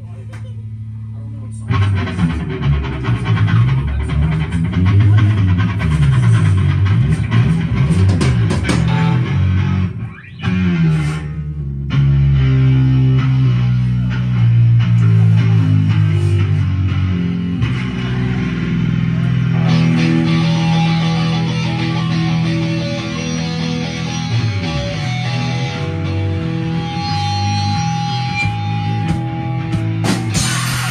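Live rock band playing an instrumental passage on electric guitar, bass guitar and drums, loud. The music drops out briefly about ten seconds in, then comes back with long held chords.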